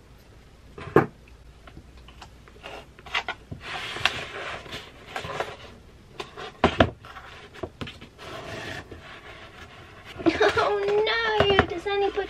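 Scissors snipping baker's twine with a sharp click about a second in, then rustling and scraping of the twine as it is pulled and wrapped around a cardboard box, with a single knock partway through. A voice comes in near the end.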